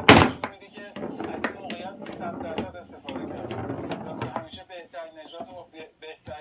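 Foosball play: a single loud, sharp crack right at the start as the ball is struck by a player figure and hits the table, then scattered lighter knocks and clicks of the ball and rods.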